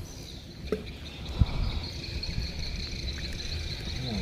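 Steady high-pitched insect chirring from the riverside trees over a low rumble, with a few small knocks, the sharpest about a second and a half in.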